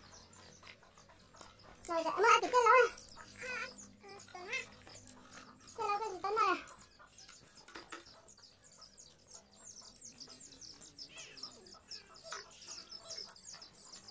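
Children's voices in a few short, high-pitched bursts in the first half, over small birds chirping rapidly and continually in the background, most clearly through the second half.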